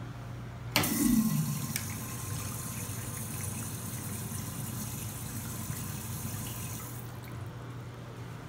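Urinal flushometer valve flushing: a sudden rush of water about a second in, then a steady hiss of water into the bowl that shuts off about a second before the end.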